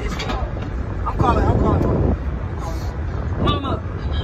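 Kids' voices exclaiming and talking in bursts over a steady low rumble.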